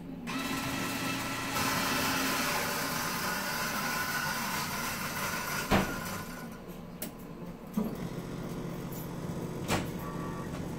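Cafection Innovation Total 1 bean-to-cup coffee machine starting a drink. Its motor runs with a steady whirring grind that starts just after the selection and grows louder a moment later, then stops with a knock near the middle. A few sharp clicks and knocks of the brewing mechanism follow.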